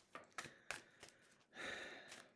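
Faint handling of a tarot deck in the hands: a few light card clicks and rustles, then a soft breathy sound about one and a half seconds in.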